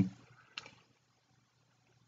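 Near silence: faint room tone with a low steady hum and one faint tick about half a second in.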